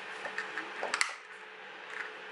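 Plastic clicks and knocks from the DJI Mavic Air remote controller's housing being handled, several small ones followed by a sharper click about a second in.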